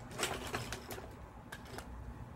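A few light clicks and rustles of things being handled close to the microphone, bunched in the first second, then quieter.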